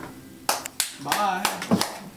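A few scattered sharp hand claps, some half a second to a second apart, with a brief voice between them.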